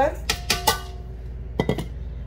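Sugar poured from a clear plastic bowl into a stainless steel mixing bowl, the two bowls knocking together a few times. The steel bowl rings briefly after the first knocks, and a second cluster of knocks comes near the end.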